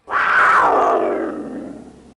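A big cat's roar sound effect: one long, loud roar that falls in pitch and cuts off abruptly.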